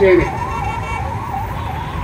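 A siren warbling rapidly up and down, about four swings a second, holding a steady level over low background noise.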